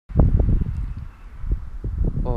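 Wind buffeting the microphone, heaviest in the first half-second, with a few dull knocks.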